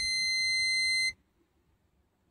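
Steady high-pitched electronic beep from a multimeter's continuity tester, cutting off sharply about a second in: the probed connector pins are connected.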